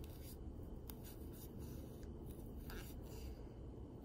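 Faint soft scratching and rustling of a crochet hook being worked through yarn stitches: a few light, irregular strokes over a steady low hum.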